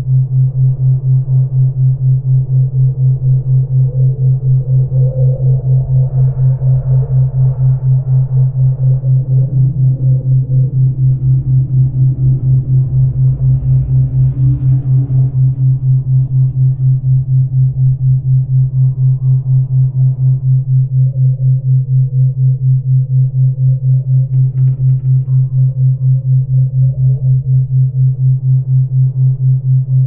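Synthesized healing-frequency music: a loud low hum that pulses evenly about three times a second, under a faint, slowly drifting ambient synthesizer pad.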